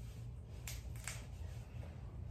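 Two faint sharp clicks about half a second apart, over a low steady hum.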